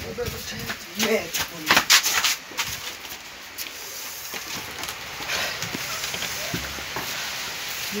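Hurried footsteps and a cluster of sharp knocks in the first few seconds, with brief voices, then quieter shuffling.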